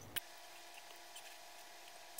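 Quiet room with a faint steady hum and one small click just after the start.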